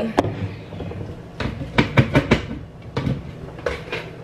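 A string of sharp knocks and clinks, thickest between one and two and a half seconds in, as kitchen items such as a glass cup and blender jar are handled and set down on a counter.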